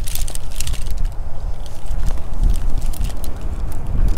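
Wind buffeting the microphone as a steady low rumble, with scattered small clicks and crackles over it.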